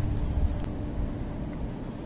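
Steady high-pitched insect chirring, with a low rumbling noise underneath.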